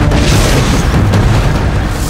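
Loud, rumbling magic-power sound effect: a dense, continuous rush of noise with a deep rumble underneath, as a spell is cast.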